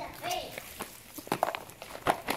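A quick, irregular run of light knocks and clicks, about half a dozen in just over a second, after a brief voice at the start.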